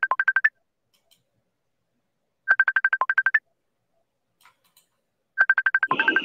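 Facebook Messenger incoming-call ringtone: short bursts of about ten rapid high beeps each, under a second long and repeating about every three seconds. One burst ends just after the start, one comes about two and a half seconds in, and one near the end.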